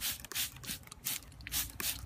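Plastic trigger spray bottle squirting repeatedly: a quick run of short hissing sprays, several a second.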